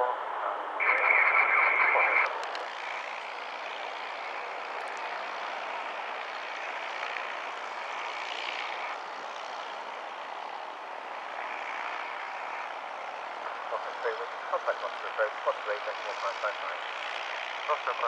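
Steady noise of a light propeller aircraft's engine running on the airfield. Air-band radio voice transmissions come over it at the start and again near the end.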